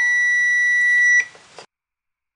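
Richmeter digital multimeter's continuity buzzer sounding one steady high beep while its probes touch a 10-ohm resistor, signalling that continuity is detected. The beep cuts off about a second in as the probes are lifted from the resistor.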